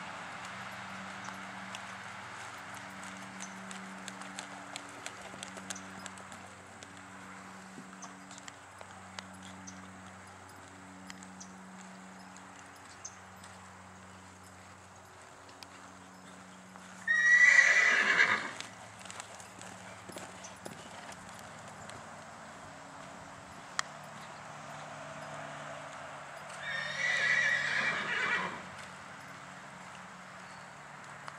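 Horse's hoofbeats, faint and soft, on arena sand, over a low hum. Two loud horse whinnies, each about a second and a half long, come about seventeen seconds in and again near the end.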